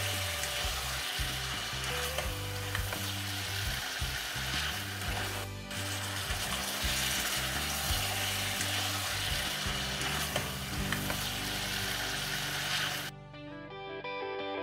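Marinated pork spare ribs sizzling in caramelized sugar and oil in a saucepan while a spatula stirs them, a steady hiss over soft background music. The sizzling cuts off abruptly about a second before the end.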